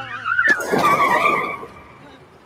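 Car tyres screeching under hard braking, a cartoon sound effect: a loud squeal with a sharp click about half a second in, dying away after about a second and a half.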